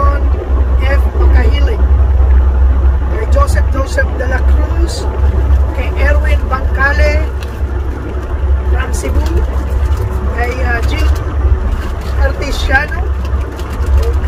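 A man talking over the steady low rumble of a semi truck, heard from inside the cab.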